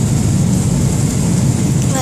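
Airliner cabin noise in flight: a loud, steady low rumble of the engines and rushing air.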